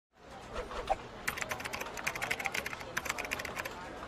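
Fast typing on a computer keyboard: a quick, uneven run of key clicks that starts a little over a second in and stops just before the end. A brief short tone comes just before the typing begins.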